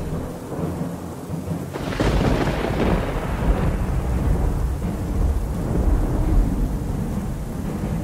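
Thunderstorm sound effect: steady rain, then about two seconds in a sudden crack of thunder that rolls on as a long low rumble.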